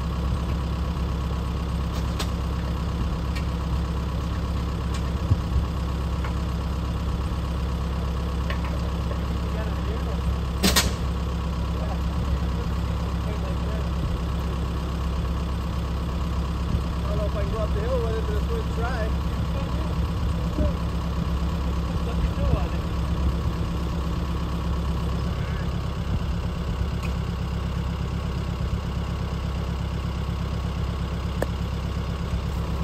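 Compact tractor engine idling steadily, with a single sharp click about eleven seconds in.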